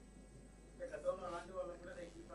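Faint speech from a voice away from the microphone, starting about a second in after a short silence.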